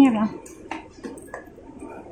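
Footsteps on hard stairs and a tiled floor while walking down: a few sharp, irregular clicks over a faint hum.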